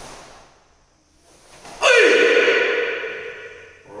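A karate kiai: one loud, sudden shout about two seconds in, fading out with echo over a second or so. Just before it, near the start, a soft swish of movement.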